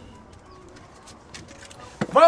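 Quiet outdoor background with a bird calling faintly.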